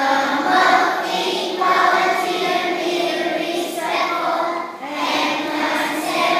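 A group of young children singing together, in phrases of held notes with a short breath about five seconds in.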